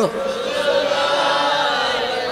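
Many men's voices chanting a devotional refrain together, a steady group chant that slowly fades.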